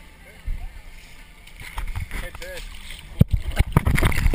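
A person sliding down a boat's water slide: rubbing and short squeaks of wet skin against the slide, building up, with a run of sharp knocks in the last second as the ride speeds up.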